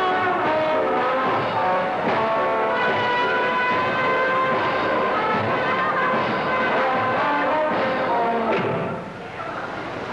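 Studio band playing a lively tune as a performer is brought on stage; the music breaks off about nine seconds in.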